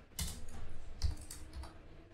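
Computer keyboard typing: several keystrokes in quick succession, then a pause.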